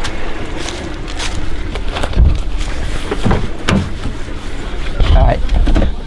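Hand-held movement noise: footsteps over dry leaves, with a run of thumps and knocks and a low rumble as the camera is carried and someone gets into a car.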